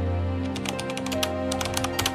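A quick, irregular run of typing clicks, a sound effect for text being typed out, starting about half a second in over steady background music.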